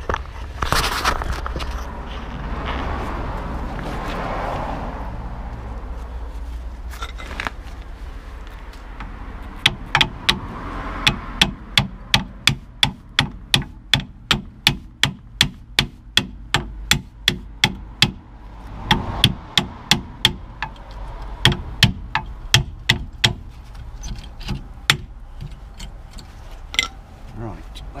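Hammer beating on a seized rear brake caliper of a VW Golf Mk4 to knock it loose, with sharp metal blows about two a second. The blows start about a third of the way in, pause briefly, then run on, with a few scattered knocks near the end.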